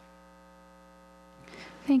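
Faint, steady electrical mains hum in the microphone and sound system during a pause in the talk. A voice starts speaking right at the end.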